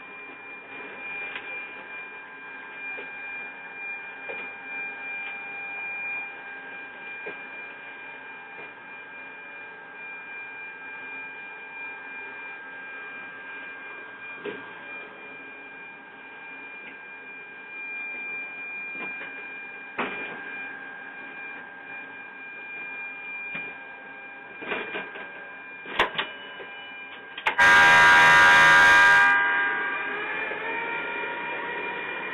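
Steady electric drive whine of a small 885-series ride-on train, holding several fixed pitches as it runs, with a few sharp clicks from the wheels on the track. Near the end a much louder tone with many harmonics sounds for about two seconds.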